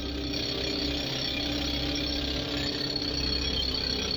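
Pneumatic rock drill running steadily, its steel drill rod boring a hole into hard rock.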